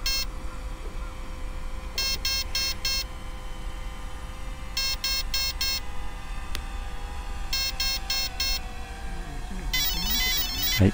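An electric helicopter's speed controller, in programming mode, sounding menu tones through the motor: four groups of four short, high beeps about three seconds apart, marking menu item 4, then a warbling tone near the end as it moves on to the next item.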